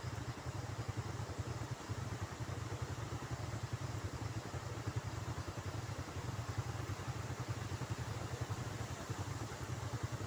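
Steady rushing of a fast, swollen flood river, with a low fluttering rumble underneath.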